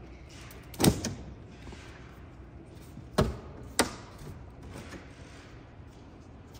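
Knocks of a plywood shipping crate's metal-edged lid as it is lifted free and handled: one sharp knock about a second in, then two more about half a second apart a little past three seconds.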